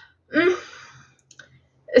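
A woman's short wordless vocal sound, then a few faint clicks about a second and a half in.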